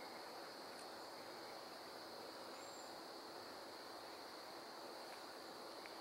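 Faint, steady high-pitched chorus of insects, an unbroken drone with no other sound standing out.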